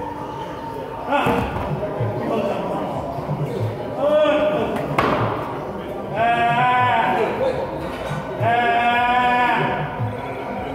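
A man straining in a plank under a stack of iron weight plates cries out: a short cry, then a sharp clank of the plates about five seconds in as the stack slides off his back, then two long, high, held cries. A faint regular bass beat of gym music runs underneath.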